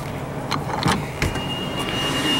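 A school-bus rear emergency exit door being unlatched and opened: a few sharp metallic clicks from the handle and latch. Then the door-open alarm buzzer starts, a steady high-pitched tone about a second and a half in.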